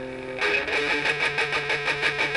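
Electric guitar: a held note rings briefly, then from about half a second in comes a fast, even run of down-up pick strokes on a single low note, the fifth string at the third fret.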